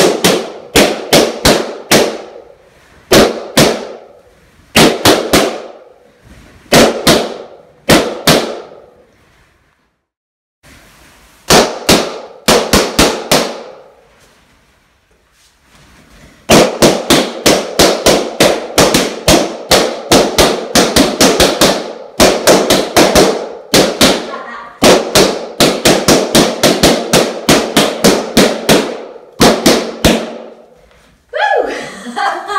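Latex party balloons being popped one after another, each a sharp bang ringing briefly in the room. They come in quick clusters of several pops, with two short lulls near the middle, then an almost unbroken run of pops through the second half.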